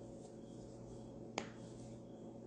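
A single sharp click about a second and a half in, over a faint steady low hum.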